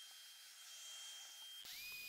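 Near silence: faint hiss with a thin, steady high tone that stops shortly before the end.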